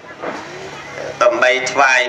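A monk's voice preaching through a microphone, taking up again about a second in after a short pause, over a low steady hum.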